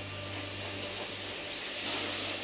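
Steady rushing hiss over a low hum, with a faint rising whistle near the end.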